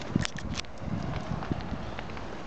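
A few soft footsteps on tarmac and small clicks from handling, over a steady background hiss.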